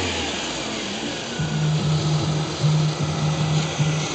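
Four-cylinder engine of a 1997 BMW 318i running in the open engine bay, falling back after a rev. From about a second and a half in, it holds a steady, higher drone.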